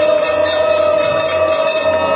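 Temple aarti music: bells and jingles struck in a fast, even rhythm of about five strokes a second, under one long held tone.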